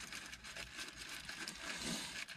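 Faint chewing of a pulled pork sandwich, with small soft ticks and rustles over a quiet car-cabin background.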